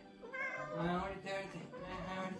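Young cat meowing: a short meow and then a longer one, over soft background music.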